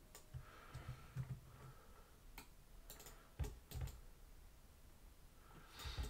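A handful of faint, separate clicks from a computer mouse and keyboard, several close together in the middle.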